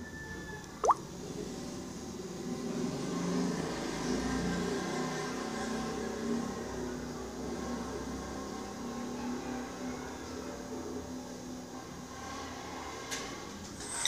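Faint outdoor street ambience: a steady low hum and hiss, with a short rising chirp about a second in.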